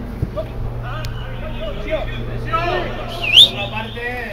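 Players shouting across a football pitch over a steady low background hum, with a short, loud, high-pitched shrill call about three seconds in.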